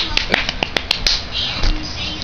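A quick, irregular run of about seven sharp clicks and taps within the first second, from a hand handling the small handheld camera close to its microphone.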